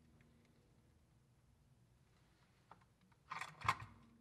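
Mostly quiet, then near the end a brief clatter of several sharp plastic knocks as the weighted 3D-printed trap door of a pop-bottle mouse trap swings shut behind a mouse, a sign the trap has sprung with the mouse inside. A single faint tick comes a little earlier.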